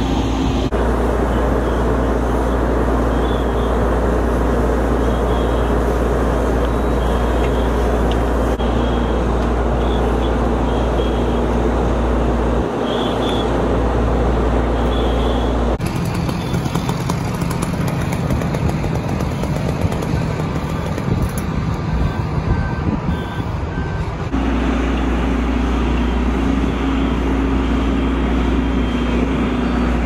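Steady drone of a fire engine's diesel engine running, a low hum with a steady mid tone. About halfway through it gives way for several seconds to wind rumbling on the microphone, then returns.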